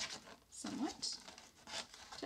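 Aluminium-foil-wrapped cardboard tube rubbing and crinkling against the rim of a hole in a paper plate as it is worked through, in short scrapes. A brief rising hum from a person comes less than a second in.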